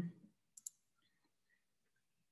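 Two quick mouse-button clicks close together, sharp and faint, in an otherwise near-silent room.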